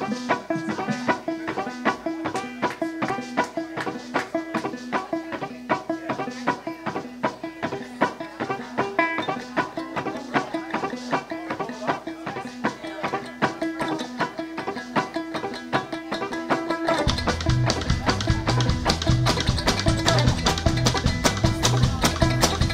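Live instrumental intro from an acoustic string band: quick picked banjo and guitar notes. About three-quarters of the way through, bass and the full band come in and the music gets louder.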